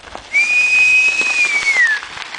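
A person whistling one loud, long note that holds steady for over a second, then slides down in pitch and stops near the end.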